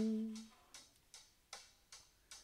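A tenor saxophone's held note dies away in the first half second. It leaves a quiet pop drum-machine beat of light ticks, about two and a half a second.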